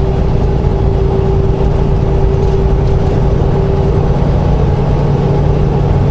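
Semi-truck engine and road noise heard inside the cab at highway cruising speed: a steady low drone, with a faint steady hum that fades out about two-thirds of the way through.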